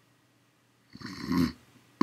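Snoring: quiet for about the first second, then one snoring breath lasting about half a second.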